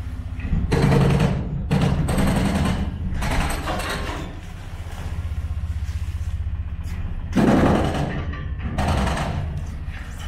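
A boat's engine throbs steadily at low pitch. Over it come several bursts of crunching and scraping as the boat pushes through broken river ice; the loudest burst is about a second in and another comes near the end.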